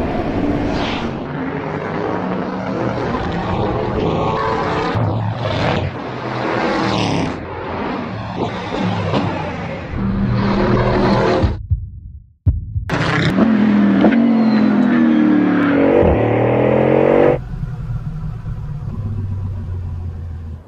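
Bugatti Bolide's W16 engine at speed on track, revving up and down through the gears. The sound drops out briefly about twelve seconds in, then returns with strong rising revs.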